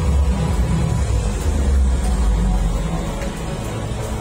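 Amusement-arcade din: background music over a steady low rumble.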